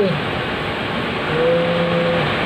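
Steady rushing noise, like running water or a fan. A man's voice is heard briefly at the start, and the same voice holds one low note in the second half.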